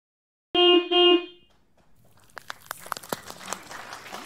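A horn-like sound effect honks twice in quick succession, both honks at the same pitch. It is followed by a faint scatter of sharp crackling clicks.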